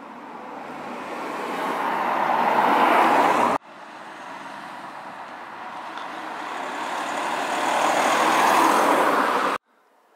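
Car traffic on a village street: the tyre and engine noise of an approaching car swells steadily and stops abruptly about three and a half seconds in, then a second car swells the same way and stops abruptly near the end.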